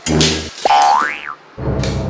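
Cartoon comedy sound effect: a whistle-like tone slides up and then back down over about half a second, in the middle, amid background music. A short low musical note opens it and a new music track starts near the end.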